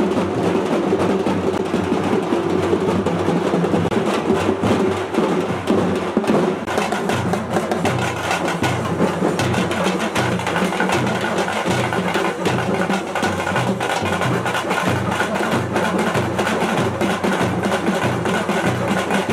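Procession drum troupe playing fast, dense stick strokes on drums, with a steady low beat joining about seven seconds in.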